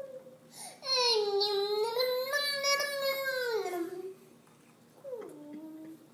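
A baby's long drawn-out vocalizing, about three seconds of one high voice whose pitch dips, rises and then falls away, followed about a second later by a shorter call that slides down.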